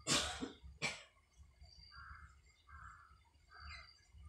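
A person coughing twice, a sharp cough at the start and a shorter one about a second in, followed by three faint short sounds spaced under a second apart.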